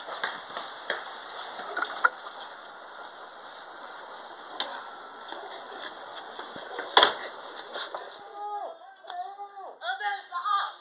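Scattered light knocks and clicks, with one sharp loud crack about seven seconds in. Near the end a series of short rising-and-falling pitched tones begins.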